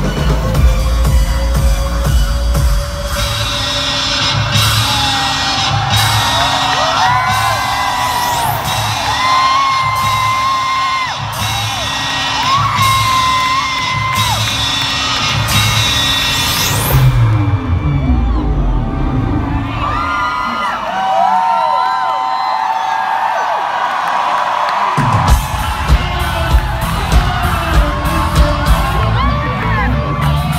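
Loud live concert music from an arena PA, with a steady heavy beat and fans whooping and screaming over it. About 17 seconds in, a rising sweep leads into a stretch with no bass, and the beat comes back about 25 seconds in.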